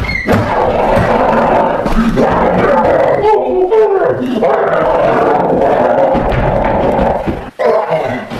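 Long, loud monster growling and roaring, with a shifting snarl a little past three seconds in; it breaks off sharply about half a second before the end.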